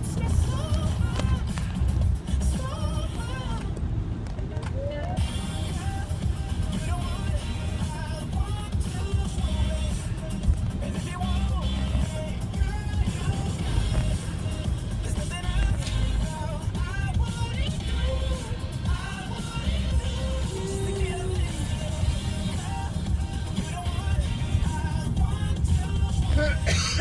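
Steady low rumble of a car on the road, heard from inside the cabin, with faint music playing over it that has a wavering melodic line like singing.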